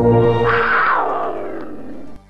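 Music tones that stop about half a second in, overtaken by a loud, noisy sound effect that sweeps downward in pitch and fades over about a second, like an animal roar or a whoosh.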